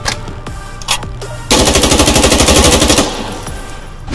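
Automatic rifle gunfire sound effect: one sustained burst of rapid fire, starting about a second and a half in and lasting about a second and a half. It is preceded by a couple of short clicks.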